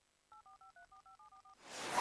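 Telephone keypad touch-tones: a rapid run of about ten short dialing beeps. Then a whoosh swells up near the end.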